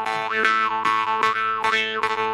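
Solo jew's harp played as a melody: a steady drone that never changes pitch, twanged about three times a second, with the tune sung out in its overtones as the mouth shape changes.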